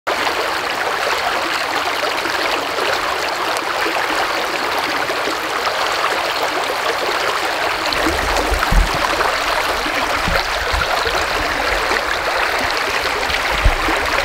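Shallow stream flowing steadily over its bed, a continuous rushing and rippling of water. A few short low thuds come in during the second half.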